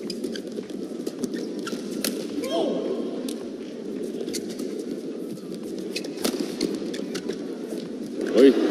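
Badminton rackets striking a shuttlecock in a fast doubles rally, sharp cracks at irregular intervals with one of the loudest about six seconds in, over a steady murmur of arena crowd noise.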